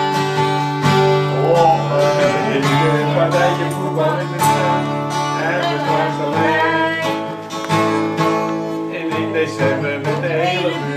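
Acoustic guitars strumming chords together in a steady rhythm: an instrumental stretch of a song between sung lines.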